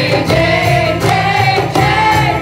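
Live kirtan: a devotional chant sung by several voices together on long held notes, over harmonium, acoustic guitar and hand percussion.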